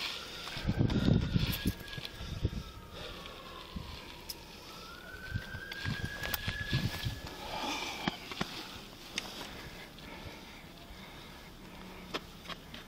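A faint distant siren wails once, its pitch falling slowly and then rising again and holding for a few seconds. Near the start there is a loud rustling rumble of the body-worn camera being moved, and scattered clicks and knocks of handling follow.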